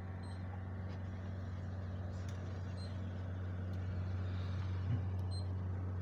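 Steady low hum under faint background hiss, with no distinct events.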